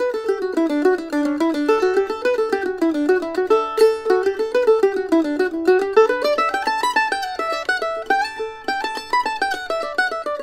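Kentucky KM150 all-solid-wood A-style mandolin played with a pick: a fast single-note melody line that moves around the middle register, then climbs to higher notes about six seconds in and again near the end.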